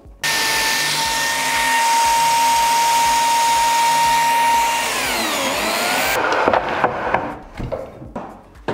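A biscuit joiner with a dust-extraction hose runs with a steady high whine and a rush of air. About five seconds in it is switched off: its pitch falls as it winds down, and the noise stops about a second later. A few knocks of wood being handled follow.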